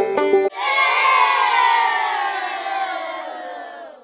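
Banjo music for about half a second, then an abrupt switch to a group of children cheering, many voices together, slowly fading out near the end.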